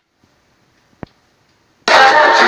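Near silence with a single short click about a second in, then loud music and crowd noise cutting back in abruptly near the end.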